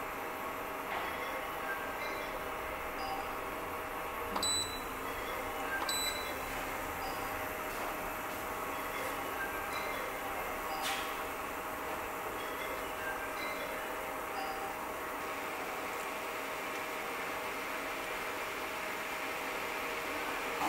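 Induction cooker running under a steel pan of water as it heats: a steady faint hum with scattered brief high pings.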